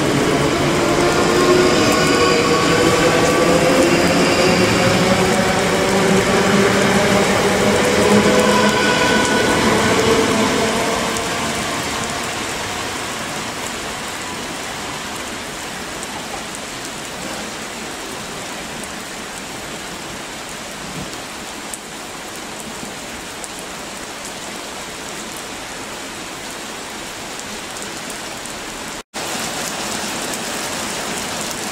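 South Western Railway Class 458 electric multiple unit accelerating away, its traction motors whining in a slowly rising pitch, fading out over the first ten seconds or so. Steady heavy rain on the platform and track is left hissing after it. The sound cuts out for a moment near the end.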